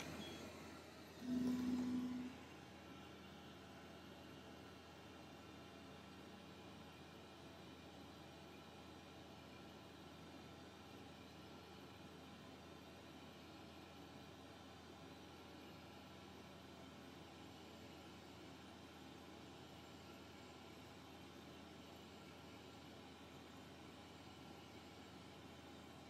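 A single low beep about a second long from the xTool M1 laser engraver as its start button is pressed, then the faint steady hum of the machine running as it engraves.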